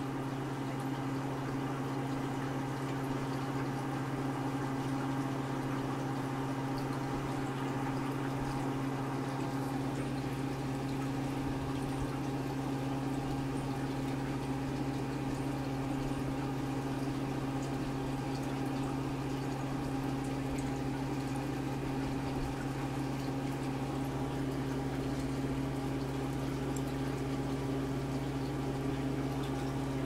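Aquarium bubbler running: a steady stream of air bubbles rising and bursting in the tank, over a constant low hum from the tank's equipment.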